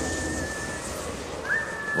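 A person whistling a high held note that fades, then slides up into another held note about a second and a half in. Underneath is the low, steady rumble of a train running on rails.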